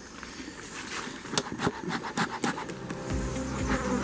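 Honeybees buzzing in and around an opened hive, with scattered sharp clicks and knocks; the buzz becomes lower and louder about three seconds in.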